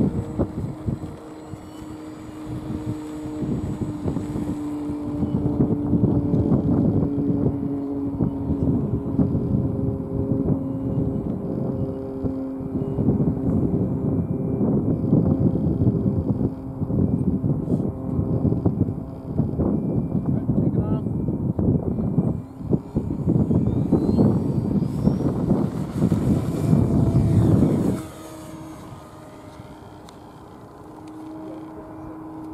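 Radio-controlled model airplane's motor and propeller running as it taxis and takes off, under heavy wind buffeting on the microphone. The level drops shortly before the end.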